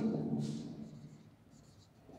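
Marker pen writing on a whiteboard: a few faint, short scratchy strokes.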